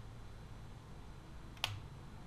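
Faint room tone with one sharp, short click about a second and a half in.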